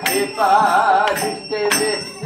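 Devotional kirtan music: a wavering melody line, most likely sung, over small metal hand cymbals (kartals) struck a few times.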